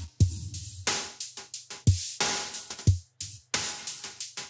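Electronic drum loop from the Analog Lab software instrument playing back. A deep kick with a falling pitch lands about once a second, with noisy hi-hat and snare-type hits between the kicks.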